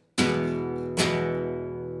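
Nylon-string classical guitar chord strummed twice with the fingers: a downstroke with the whole open hand, then about a second later an upstroke with the thumb, the open-hand strum of flamenco and Latin music. The chord is left ringing and slowly fades.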